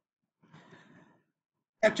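A man's faint breath, a short sigh-like rush of air lasting under a second, in otherwise dead silence. A man's voice starts speaking near the end.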